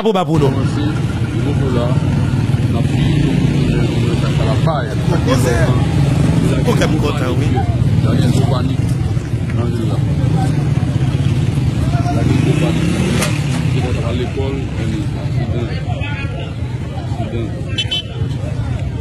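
Street sound: heavy truck and motorcycle engines running steadily, with a hubbub of people's voices over them.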